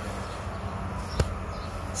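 Steady low background hum with one sharp click a little over a second in.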